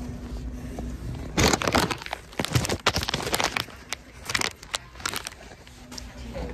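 Rustling and crinkling handling noise from the phone rubbing against a quilted nylon puffer jacket, an irregular run of scratchy strokes starting about a second and a half in and dying away near the end.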